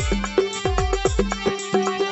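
An instrumental passage of Rajasthani folk bhajan music. Held melodic notes sound over a quick, even drum rhythm, with deep drum strikes that drop in pitch.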